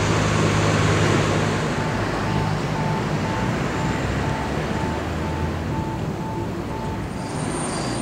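Town-square traffic: a motor vehicle's engine running close by, loudest in the first couple of seconds and then fading. A regular electronic beeping, about two beeps a second, sounds from about two seconds in until near the end.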